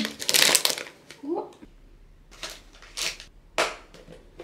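Soft plastic wipe packaging crinkling loudly as packs are pressed into a plastic wipe box, then a few short sharp clicks as the box is handled and its lid shut.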